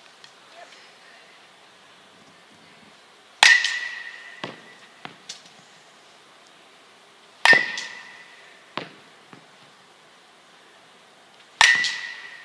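A baseball bat hitting soft-tossed baseballs three times, about four seconds apart, each contact a sharp ping with a brief ringing tone typical of a metal bat. A few softer knocks follow each hit as the ball lands.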